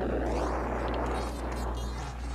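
Cartoon sound effect from the animated film's soundtrack: a steady rushing noise as a character is flung through a wall in clouds of dust.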